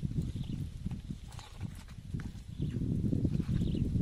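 Hands handling raw eels on a banana leaf in a woven basket: many soft, low knocks and rustles in quick clusters, a little louder in the second half.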